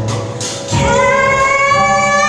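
A woman singing with a live jazz band: about three-quarters of a second in she takes a loud, long note that climbs slightly in pitch, over piano, bass and drums.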